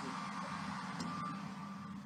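A hair dryer running in another room, heard faintly as a steady whooshing hiss with a thin whine.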